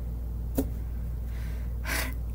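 A woman's breathy gasp near the end, drawn in just before she speaks, after a single short click about half a second in, all over a low steady hum.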